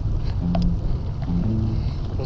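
Steady wind and road rumble on the microphone of a bicycle rolling down a paved road, with a few soft, low notes of background music.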